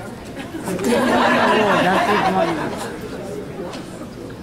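People talking: one voice close to the microphone from about a second in, over background chatter in a large hall.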